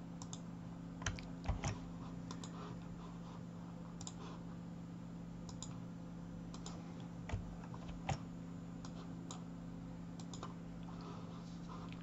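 Computer mouse clicks and keystrokes, about a dozen short sharp clicks at irregular intervals, over a steady low hum.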